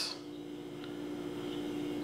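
A steady low hum with faint hiss, the room tone of a quiet indoor space.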